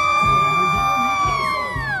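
A long high-pitched squeal from a young voice, held steady, then dropping in pitch near the end.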